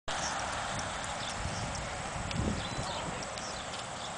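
Horse galloping on soft arena dirt: dull, irregular hoofbeats under a steady background hiss.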